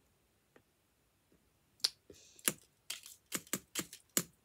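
Near silence, then about eight light, sharp clicks and taps at uneven spacing in the second half, made by a hand fiddling with a small handheld object.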